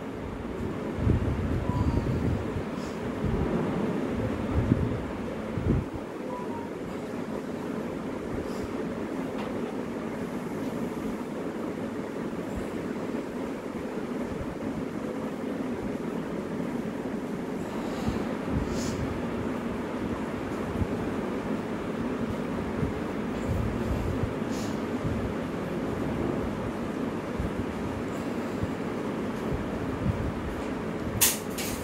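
Steady background noise: a continuous rumbling hiss, heavier at the bottom in the first few seconds, with a few faint clicks.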